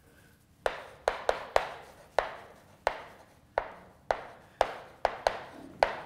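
Chalk knocking against a blackboard as words are written: about a dozen sharp clicks at an uneven pace, starting just under a second in, each with a short echo in the room.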